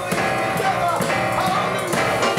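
Live boogie-woogie piano played on a keyboard, with a man singing over it into the microphone.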